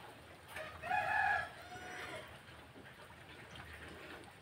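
A rooster crowing once in the background, starting a little after half a second in, with a fainter trailing end that dies away around two seconds in.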